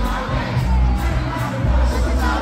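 Live rap performance through a PA: a performer's amplified vocals into a handheld microphone over a loud backing track with a heavy, pulsing bass beat, with crowd noise from the audience underneath.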